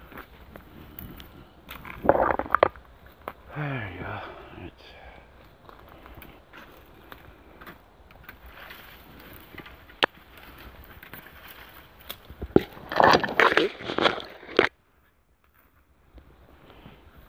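Footsteps crunching and rustling over scattered debris and through brush and tall weeds, with twigs and leaves crackling. There is a loud burst of crunching near the end, then the sound cuts off suddenly.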